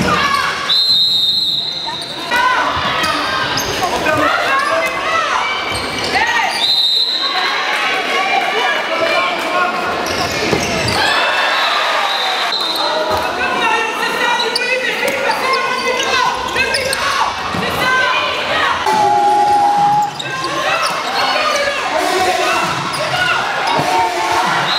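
Live handball play in a reverberant sports hall: the ball bouncing on the wooden court, shoes squeaking, and players and crowd calling out. A short, high referee's whistle blast sounds about a second in, again around seven seconds and around twelve seconds.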